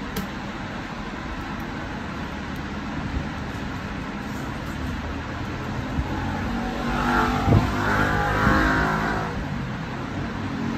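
Steady background road-traffic noise, with a motor vehicle's engine passing that swells to its loudest about seven to nine seconds in and then fades.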